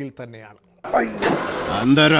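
A man speaking, a brief pause, then about a second in a man's voice over a steady noisy hiss that starts abruptly.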